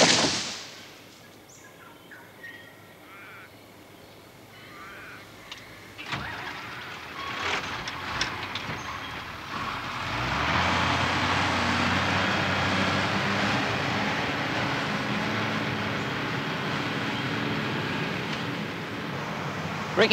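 Log skidder's diesel engine: the first half is quiet with only a few faint sounds, then the engine comes in about halfway through and runs steadily and evenly as the machine moves in.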